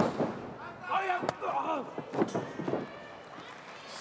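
Sharp smacks of strikes in a wrestling ring: a loud one at the start and lighter ones about a second and two seconds in, with shouting voices in between.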